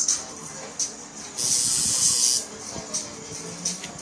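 A spray bottle hissing in one steady spray of about a second, most likely wetting the tattooed forearm before it is wiped. Shorter hissing puffs come before and after it.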